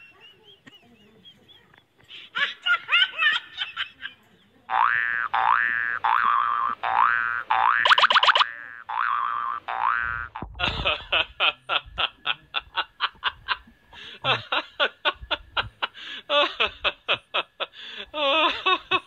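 Cartoon sound effects on an edited soundtrack: a run of repeated rising 'boing' springs, one about every 0.7 seconds. Then, about ten seconds in, comes a fast, even string of short laugh-like sounds, about four a second.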